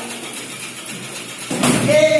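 Near the end, a karate sparring takedown: a sudden loud thud as a body hits the dojo's foam mats, followed at once by a held karate shout (kiai).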